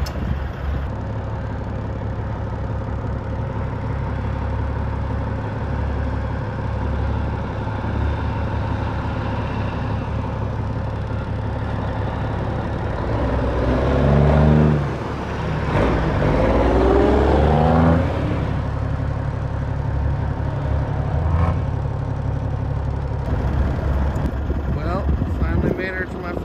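Kenworth W900 semi truck's diesel engine running with a steady low drone, then pulling up through the gears in the middle: two rising revs, the first breaking off after about a second and a half, the second held high for a couple of seconds before dropping back.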